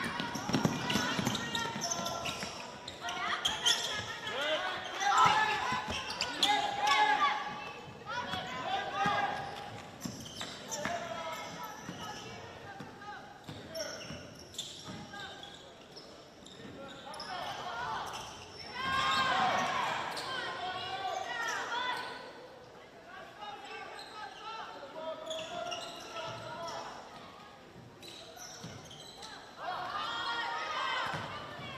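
A basketball being dribbled on a hardwood gym court, mixed with players' and coaches' voices calling out during live play.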